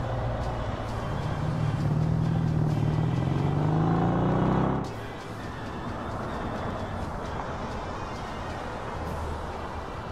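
A small road-vehicle engine accelerating, its pitch rising steadily for about three seconds and then cutting off abruptly about halfway through, over background music.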